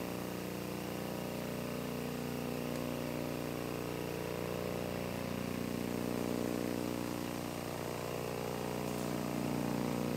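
A steady low droning hum made of several held tones, with a slight swell now and then.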